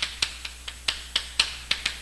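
Chalk tapping and clicking on a chalkboard as words are written by hand: a run of sharp, irregular taps, about four a second.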